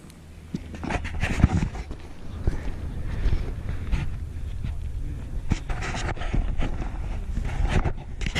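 A hiker's heavy breathing, in irregular puffs, while climbing a steep dirt trail, over a steady low rumble of wind on the microphone.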